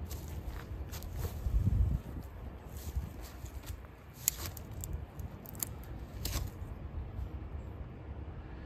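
Wind buffeting the microphone: a low rumble that swells in a gust about two seconds in. Scattered light clicks and rustles come from a cloth wick being handled and pushed into a tin can.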